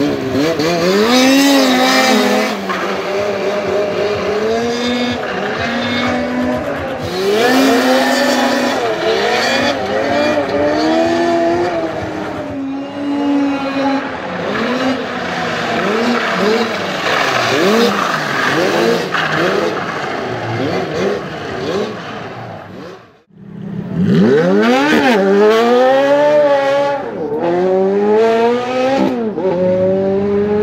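Snowmobile engine revved up and down over and over, its pitch repeatedly rising and falling as it is ridden on tarmac. The sound breaks off suddenly about three-quarters of the way through, then the revving resumes.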